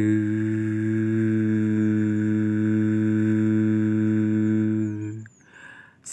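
A person humming one long, steady low note as a mouth-made engine sound for a hand-worked toy excavator; the hum breaks off about five seconds in and a short breath follows.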